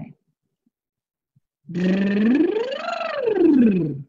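A woman's voiced lip trill, the 'bubble' exercise, sung as one slide: it starts after a short silence on a low held note, glides up to a peak and back down below where it began. It is done with the breath pushed, the forced way of doing it.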